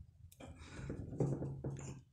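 Faint, irregular rubbing and scraping as an aluminium heatsink is pressed and worked over a gasoline-soaked paper layout on a circuit board.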